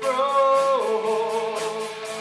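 Live rock band playing: a male voice holds a sung note that steps down in pitch a little under a second in and is held again, over electric guitars and a drum kit.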